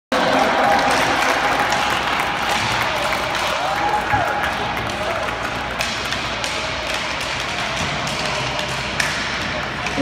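Rink-side crowd chatter, a steady mix of many voices, with scattered sharp taps and claps through it.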